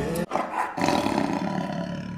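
The song cuts off abruptly and, about a quarter second in, a sustained, rough, roar-like sound effect begins and carries on.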